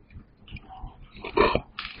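A few soft computer keyboard keystrokes in a pause, with a short wordless vocal sound, like a breath or murmur, about one and a half seconds in.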